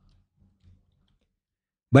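Near silence with a few faint, soft computer keyboard taps in the first second as a stock code is typed; a man starts speaking at the very end.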